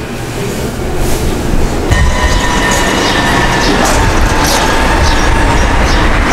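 Street traffic: a heavy low rumble of passing vehicles, with a steady whine that comes in about two seconds in.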